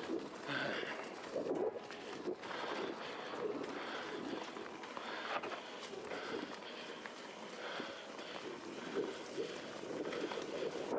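Mountain bike riding along a dry, leaf-covered dirt trail: the tyres crunch steadily through fallen leaves, with frequent small clicks and rattles from the bike.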